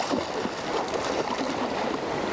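Shallow sea water lapping and splashing, with a child's swimming splashes: a steady wash of small splashes and trickles without any single loud event.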